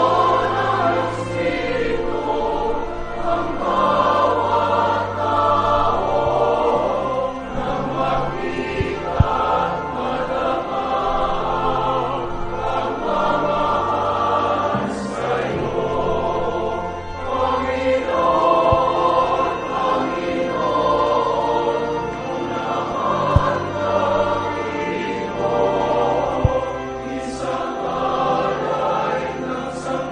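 Church choir singing a hymn during the preparation of the gifts at Mass, over instrumental accompaniment holding low sustained notes. A few brief sharp clicks cut through the singing.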